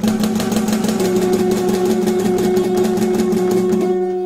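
Guitar strummed rapidly and evenly on one held chord, about ten strokes a second, its notes ringing steadily under the strokes.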